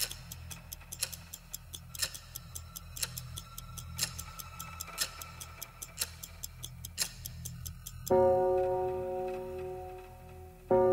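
A clock ticking as the intro of a song, with a louder tick each second and fainter ticks between, over a soft low hum. About eight seconds in, a loud bell-like note strikes and slowly fades.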